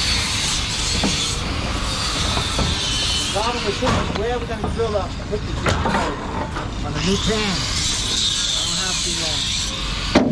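A steady rushing background noise runs throughout, with faint, indistinct voices talking from about three and a half seconds in and again near the end.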